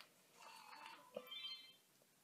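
Near silence: room tone, with one faint click a little over a second in.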